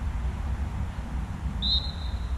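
A referee's whistle gives one short, high blast near the end, over a steady low rumble.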